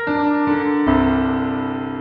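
Short piano jingle: single notes enter one after another, then a fuller chord comes in a little under a second in and rings, slowly fading.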